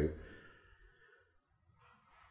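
A man's voice trailing off into a soft sighing breath, then near silence with only faint room tone. A faint breath is heard near the end.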